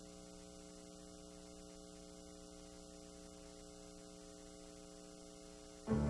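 Faint, steady electrical mains hum, a stack of even tones holding constant, in the blank gap of an old off-air videotape recording between programme segments.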